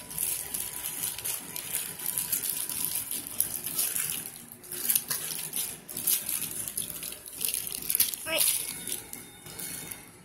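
Crinkling and rustling of thin clear plastic packaging as a toothbrush handle is worked out of its plastic wrap, a steady run of small crackles.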